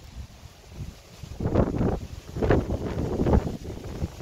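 Wind buffeting the microphone: light at first down among the saltbush at ground level, then gusting in irregular rushes from about a second and a half in.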